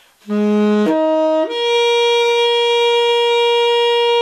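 The Martin tenor saxophone played with a Drake NY Jazz Tenor 7 mouthpiece and a Rico Royal #3 reed. After a brief pause, it plays three notes stepping upward: a short low note, a short middle note, then a long held higher note.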